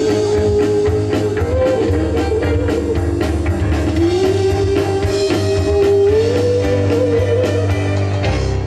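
Live rock band playing an instrumental passage: drums, bass and electric guitar under a held melody line that moves slowly between a few notes, over a steady beat.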